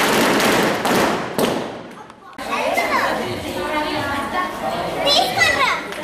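A noisy crowd of children's voices, shouting and chattering together, breaking off abruptly about two seconds in. Overlapping children's voices then return, calling out high near the end.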